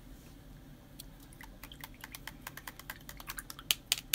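A run of light, irregular clicks and taps, starting about a second in and coming quicker and louder toward the end, like typing.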